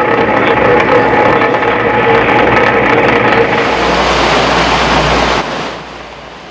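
Fishing trawler's machinery running loudly while the trawl is set: a steady whine over a rushing wash of noise, with a heavier rumble in the later part. It cuts off suddenly near the end.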